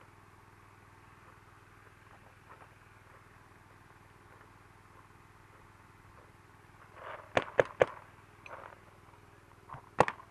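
Quiet stretch, then about seven seconds in three sharp paintball marker shots in quick succession, with a fainter pop or two near the end. These are test shots over a chronograph after the velocity has been turned down.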